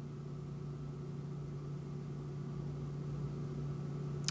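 A steady low hum with faint overtones over a soft hiss, unchanging throughout.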